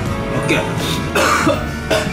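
A man coughing twice, the second cough about a second in and louder, as the habanero powder on the chicken catches his throat, over steady background music.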